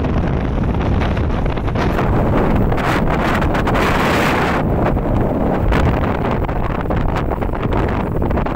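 Heavy wind noise buffeting the microphone, loudest from about three to four and a half seconds in.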